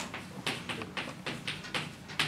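Chalk writing on a chalkboard: a quick run of short taps and scrapes, about five strokes a second, as the letters go down.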